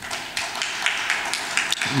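A small audience applauding, with individual hand claps standing out in an uneven patter.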